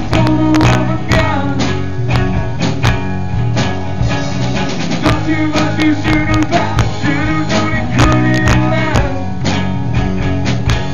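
Live rock band playing: a singer over guitars, bass and a steady drum beat, recorded from the crowd with poor sound.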